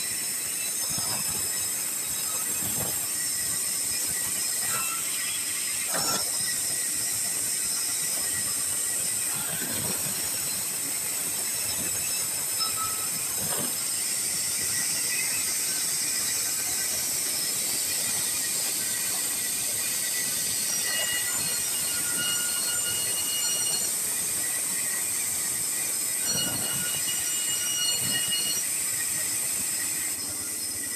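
Vertical band sawmill running and ripping sengon boards: a steady high-pitched whine from the blade over a hiss of cutting, with short, slightly lower squeals coming and going.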